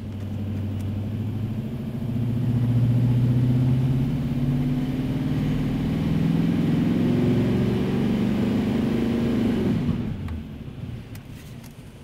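Turbo-diesel Chevrolet Silverado pickup engine pulling at full throttle on a chassis dynamometer during a ramp run. The engine note steps up in loudness about two seconds in, holds as it climbs slowly in pitch with the rpm, then falls away near the end as the run finishes.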